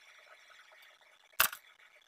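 A single sharp click about one and a half seconds in, a plastic hot glue gun being set down on the tabletop, over faint room hiss.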